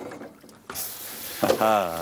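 Kitchen tap water running into a metal mesh pasta strainer insert full of cooked penne, starting abruptly under a second in. The pasta is being rinsed under the tap to cool it after cooking.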